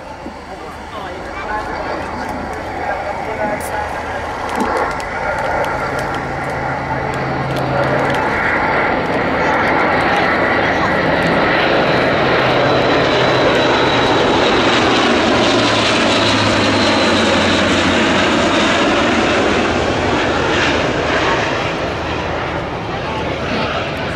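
Airbus A400M Atlas's four Europrop TP400 turboprops and eight-bladed propellers in a low flypast: the drone grows louder over the first ten seconds or so as the airlifter approaches, stays at its loudest through the middle, and eases slightly near the end. Its propeller tones bend in pitch as it passes.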